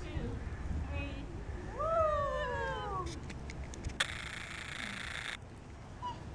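A toddler's drawn-out high call that rises and then slides down in pitch over about a second. A little later comes a steady hiss lasting just over a second, which starts and stops abruptly.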